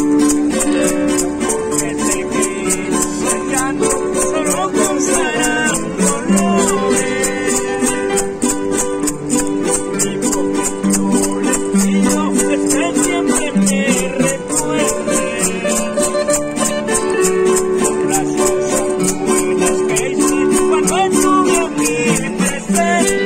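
Live acoustic music: two acoustic guitars playing a song together, with a man singing over them. A steady high rattling beat keeps time throughout.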